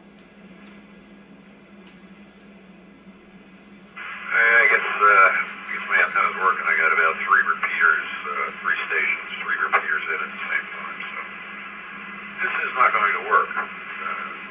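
A two-way radio's speaker: a few seconds of faint open-channel hiss, then about four seconds in a received voice transmission comes through, thin and narrow-band like radio audio, talking with short pauses.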